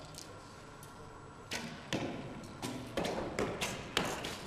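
Archery on an indoor shooting line: recurve bows loosing and arrows striking target bosses, heard as a run of sharp knocks and thuds that starts about a second and a half in, several a second, each with a short echo.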